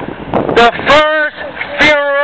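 Speech only: a loud raised voice, shouting a few long drawn-out words from about half a second in, over a steady outdoor background noise.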